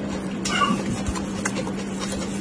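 Close-miked chewing and mouth sounds: a few crisp clicks and a short squeaky, voice-like sound about half a second in, over a steady low hum.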